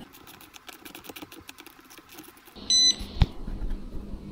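Balance-lead connectors being plugged into a LiFePO4 battery pack: a quick run of small plastic clicks and rattles, then a short electronic beep about two-thirds of the way in, followed by a single low knock and a faint steady hum.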